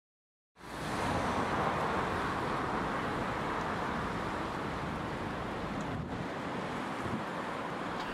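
Road traffic: cars passing by, a steady wash of tyre and engine noise that fades in about half a second in.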